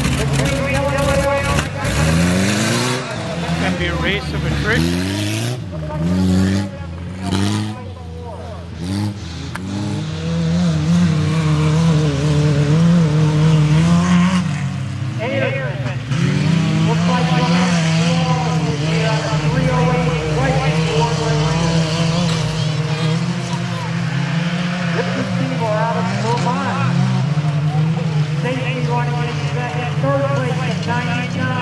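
Engines of small pickup race trucks revving hard on a dirt-and-grass track. The pitch climbs repeatedly over the first few seconds as they accelerate, then holds a steady, loud drone through the rest.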